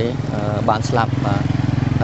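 A small engine running steadily nearby, a low pulsing hum under a man talking.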